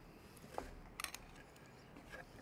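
Faint eating sounds: a few soft clicks of a spoon and mouth noises as a spoonful of rice is taken from a cardboard takeaway box, with a short small mouth sound about half a second in and a cluster of clicks around the middle.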